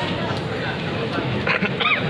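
Murmur of a large seated crowd talking among themselves, with two short high-pitched squeaky cries near the end.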